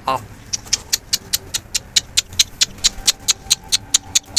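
A hand swirling water in a clay bowl to dissolve a medicine powder: quick, rhythmic sloshing splashes, about six a second.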